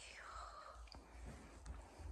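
Near silence: faint room tone with a soft, breathy falling swish near the start and a few faint ticks.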